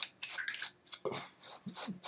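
Two Bic Comfort Twin disposable razors scraping dry beard stubble on the neck, shaved without shaving cream, in quick short rasping strokes about four a second. The blades are dull.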